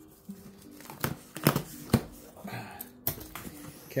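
Scissors cutting through packing tape on a cardboard box, with a few sharp snips and crackles of tape and cardboard, then the box being pulled open by hand.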